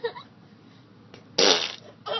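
A single fart noise, about half a second long and loud, coming a little past the middle.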